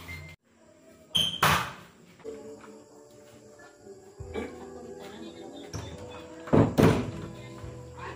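Faint background music with loud thumps and clunks from a wooden front door and someone moving through it: a pair of knocks about a second in and another pair near the end as the door is shut.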